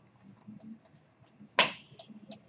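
A single sharp snap or click about one and a half seconds in, much louder than the faint room murmur around it, fading out quickly.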